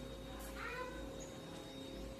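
A short pitched animal call about half a second in, lasting about half a second, over a steady faint hum.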